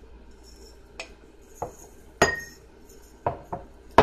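Glass jars and a glass cup knocking and clinking against each other and the table as they are handled: about five sharp knocks, the loudest about two seconds in with a brief ring.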